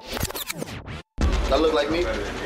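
Turntable scratching in quick back-and-forth sweeps, cutting off sharply about a second in. A room-tone bed with a low hum follows.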